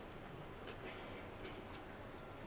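A few faint, light clicks, spaced unevenly, over the steady low hiss of a quiet hall.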